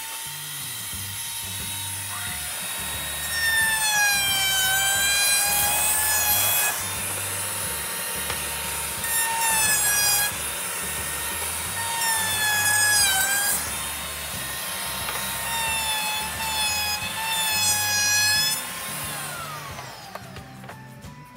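Porter-Cable router mounted under a router table, running with a round-over bit and played back sped up: its whine rises as it spins up, sags in pitch four times as the wooden board is fed past the bit and the edge is cut, and falls away near the end as it winds down. Background music with a steady low beat plays underneath.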